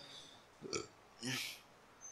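Two brief, quiet vocal sounds from a man's throat and mouth close to a microphone, about a second apart, the second slightly longer.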